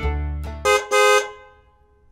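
The last of a short intro jingle, then two quick cartoon car-horn honks, a 'beep-beep' sound effect, after which the sound dies away to near silence.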